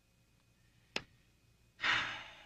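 A man sighing: a long breath out near the end that fades slowly. A single short click comes about a second in.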